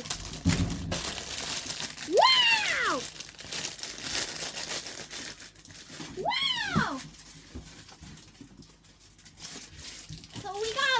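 Clear plastic bag around a plush toy crinkling as it is handled, with a soft thump just after the start. Two short high squeals, each rising then falling in pitch, come about two seconds in and again about six seconds in.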